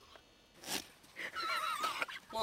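A goat bleating: a long quavering call whose pitch wobbles rapidly up and down, starting a little past halfway, after a brief noisy burst.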